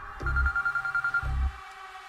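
A telephone ringing with one fast trilling ring about a second long, over two low bass thuds.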